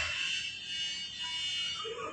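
A steady high-pitched buzzing tone.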